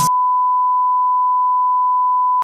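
Television colour-bars test tone: one steady beep at a single unchanging pitch, the reference tone played with bars as a transition effect.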